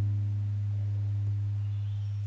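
A low guitar note left ringing between phrases, fading slowly to an almost pure low hum with its upper overtones gone.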